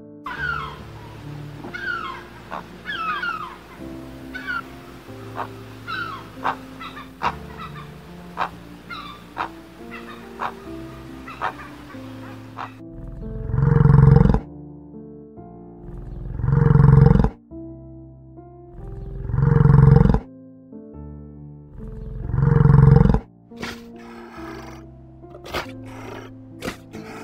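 Soft music runs throughout, with short high falling chirps over it in the first half. From about halfway, four loud, deep animal roars come about three seconds apart.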